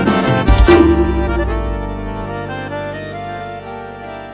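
The final bars of an accordion-led forró song. A quick flurry of accordion notes ends on an accented low hit just under a second in, then a final chord with bass is held and fades away.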